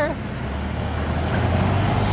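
A passing SUV on the street, a low steady hum of engine and tyres that grows louder as it approaches.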